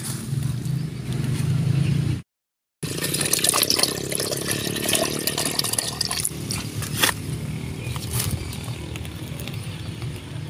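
Liquid poured from a plastic jerrycan into a plastic measuring jug, splashing and gurgling as the jug fills, with some scraping and clatter of the plastic containers. The sound drops out briefly about two seconds in.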